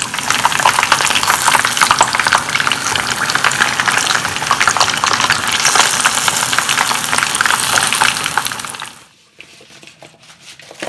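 Flour-coated chicken wings deep-frying in hot oil: loud, dense sizzling and crackling, which drops away suddenly about nine seconds in.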